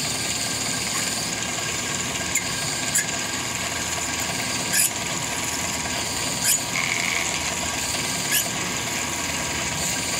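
Hardinge DV-59 lathe running with flood coolant pouring while a twist drill bores into grade 5 titanium bar, a steady cutting and splashing noise with a few short, sharp squeaks from the drill at irregular intervals.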